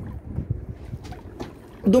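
Low rumble of wind buffeting the microphone, with scattered light knocks and rustles of handling. A man's short "aa" comes near the end.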